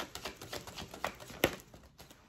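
A deck of tarot cards being shuffled by hand: a run of quick, soft card clicks, with one sharper snap about a second and a half in.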